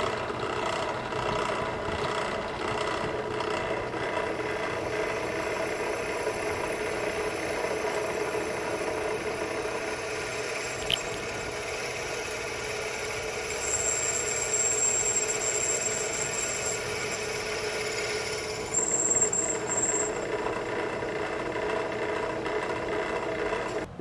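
Benchtop drill press running steadily as a DeWalt multi-step cobalt bit cuts into half-inch AR500 hardened steel plate under steady downward force. A high-pitched squeal from the bit comes and goes about halfway through and again near the end. The bit struggles to get through the hardened plate as its cutting edges wear.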